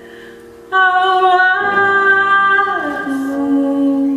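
A woman singing long held notes over piano. Her voice comes in strongly just under a second in, moves up a step, then glides down to a lower note that she holds to the end.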